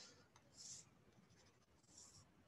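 Faint scratch of a stylus writing on a tablet screen, one short stroke about two-thirds of a second in, otherwise near silence.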